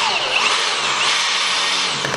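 Cordless power tool driving a long screw into a floor joist through a right-angle offset screwdriver bit, running steadily under load.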